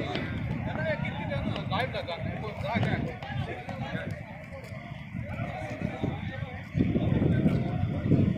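Distant, indistinct voices of people talking and calling across an open ground, over a low rumble that gets louder about seven seconds in.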